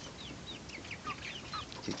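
Young chickens peeping: a steady run of short, faint, falling chirps.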